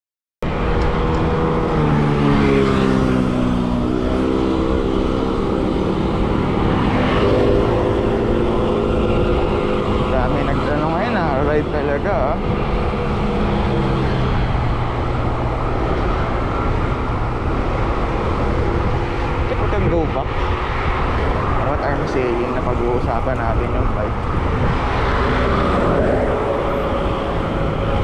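Heavy wind rumble on the microphone while riding a road bike at speed, with the drone of a motor vehicle's engine heard over it through the first half.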